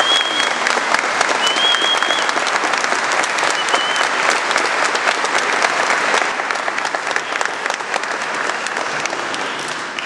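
Congregation in a church applauding the newly pronounced couple: dense, steady clapping that slowly tapers off in the last few seconds. A few short high whistles ring out over the clapping in the first four seconds.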